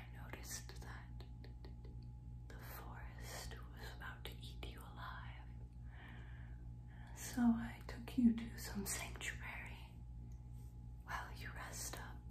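A woman whispering softly into a close microphone, with a steady low hum underneath.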